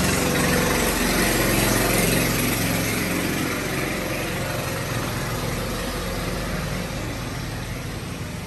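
An engine idling steadily, its low hum fading over the first few seconds, over a steady hiss.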